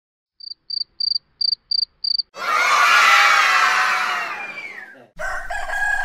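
Intro sound effects: six short high-pitched chirps in quick succession, then a burst of children cheering that fades away over about three seconds. Music starts just before the end.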